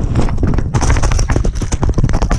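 Ducks' bills pecking and dabbling rapidly in a plastic feed bowl of pellets right at the microphone: a dense, irregular clatter of sharp knocks, starting abruptly.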